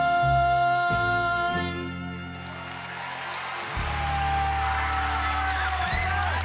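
A young girl's voice holds a long, steady final note of a ballad over live band accompaniment, ending about two seconds in. The band then sustains a closing chord with a second held note as audience cheering and applause swell.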